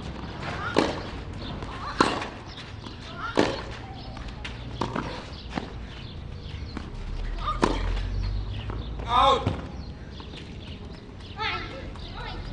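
Tennis rally: sharp racket-on-ball strikes and ball bounces about every second and a half, followed by a short shout about nine seconds in and a voice near the end.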